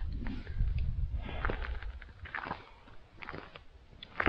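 A few crunching footsteps on gritty asphalt, each a short sharp crunch, with a low rumble of wind on the microphone in the first half.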